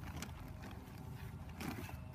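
Soft rustling and scraping of a plastic fertiliser bag as a hand reaches in to scoop out sheep pellets, over a steady low outdoor rumble.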